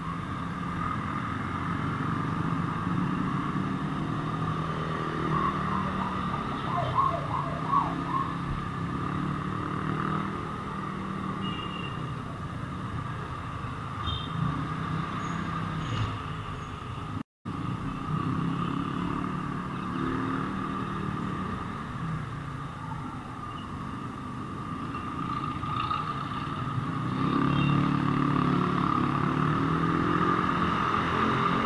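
Motorcycle engine running steadily while riding through city traffic, with the hum of the surrounding vehicles. It cuts out for an instant just past halfway and grows louder near the end.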